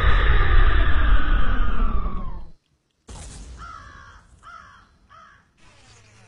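A loud, dense rushing noise with a slowly falling tone in it stops abruptly about two and a half seconds in; after a short gap, a bird calls three times with short cawing calls.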